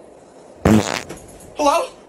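Cartoon fart sound effect: a short loud burst about half a second in, then a shorter wavering squeak near the end.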